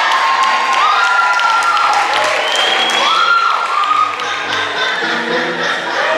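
Audience applause and cheering with several high whoops, over low piano notes.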